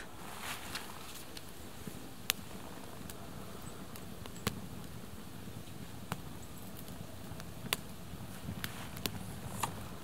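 Small twig campfire crackling: sharp, scattered pops every second or so over a faint steady hiss, while a pine-resin-soaked cloth torch head is held in the flames.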